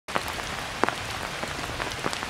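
Heavy rain falling steadily, with a few louder single drops striking close by.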